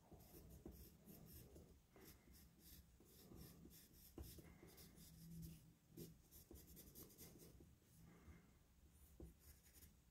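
Faint scratching of a graphite pencil on paper in many short, quick strokes as a beard is hatched in.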